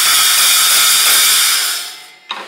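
Homemade cymbal stack, two old cymbals (one Sabian, one Zildjian) with a cut-out centre hole and drilled holes, stacked together and struck with a drumstick. It gives a loud, noisy wash that rings on steadily and then fades out near the end.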